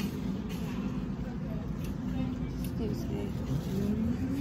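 Steady low rumble of store background noise picked up by a handheld phone while walking, with faint voices and a few light clicks near the end.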